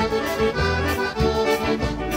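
Piano accordion playing a sustained instrumental melody of a gaúcho regional song, with the band's bass and drums keeping a steady beat underneath.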